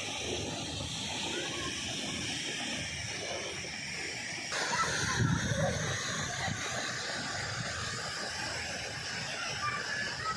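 Outdoor ambience: a steady hiss with wind buffeting the microphone, swelling about five seconds in, and faint distant voices.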